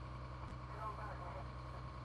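Faint, indistinct voices over a steady low hum, with one light click about half a second in.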